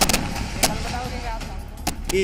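Burning hingots, hollow fruit shells packed with gunpowder, going off as they are hurled. Several sharp bangs come one close after another at the start, another about half a second later and one just before the end, with voices in the background.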